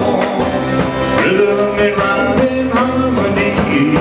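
A live country-rock band playing: an acoustic guitar and a drum kit keep a steady beat while a melody line slides and bends in pitch, with no sung words.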